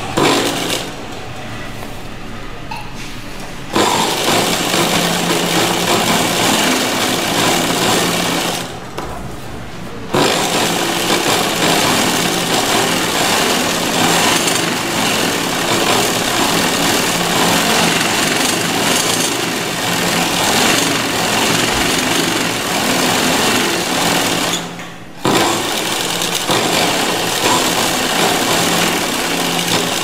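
Sewing machine running as it stitches a seam in fabric, sewing in long stretches with short pauses: one about a second in, one around nine seconds in and a brief one about 25 seconds in.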